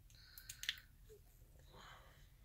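Faint sticky clicks and a soft rubbing of thick face cream being worked between the fingers, with the sharpest click just over half a second in.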